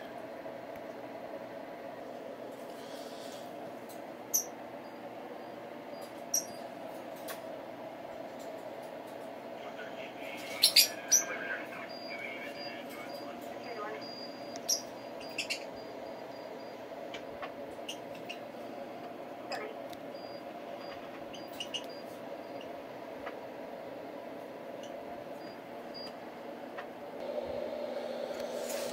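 Steady low background murmur with scattered sharp clicks and knocks of parts being handled during the transceiver's reassembly, including a louder cluster of clicks about eleven seconds in.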